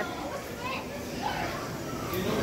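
Background voices of children talking and playing, faint and overlapping, with no single clear speaker.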